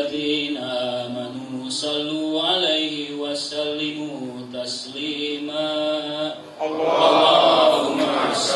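A man's voice chanting in Arabic through a microphone, in long, held, melodic phrases. Near the end the sound grows louder and fuller.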